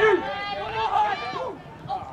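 Several people shouting at once, their calls overlapping; the shouting fades about a second and a half in.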